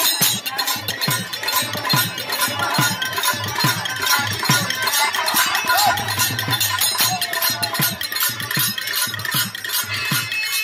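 Instrumental accompaniment of a live Holi folk song: jingling hand cymbals keeping a fast, even rhythm over drum strokes, with no clear singing.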